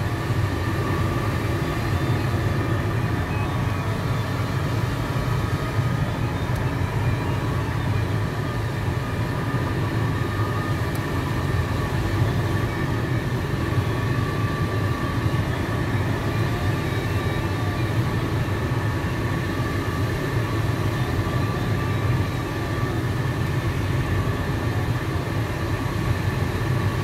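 Steady rush of airflow in the cockpit of a PIK-20E glider in flight, with faint steady high tones above it.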